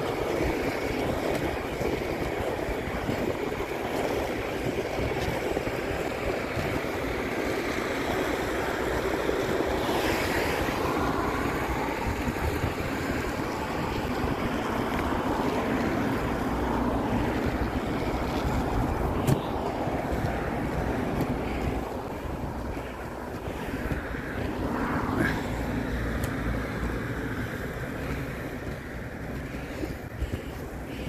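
Steady noise of inline skate wheels rolling on asphalt, mixed with wind on the phone's microphone and road traffic passing alongside.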